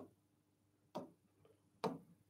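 Stylus tapping on an interactive touchscreen board: three light, faint taps a little under a second apart.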